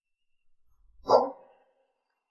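A single short dog bark about a second in, preceded by faint low thuds.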